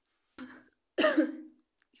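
A woman coughing twice, the second cough louder.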